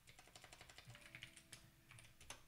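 Faint, quick clicking of computer keyboard keys as a search command is typed into a terminal.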